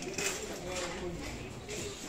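Faint, indistinct voices in the background with light rustling; no clear foreground sound.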